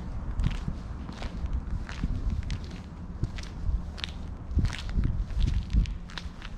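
Footsteps of a person walking at a steady pace on stone paving, a little under two steps a second, each a short scuff or click with a low thud beneath.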